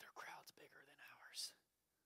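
A man's faint, whispered speech that stops about a second and a half in.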